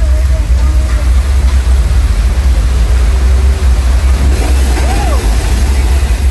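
Staged flash flood: a torrent of water released down a set street, rushing with a loud, steady deep rumble and a hiss.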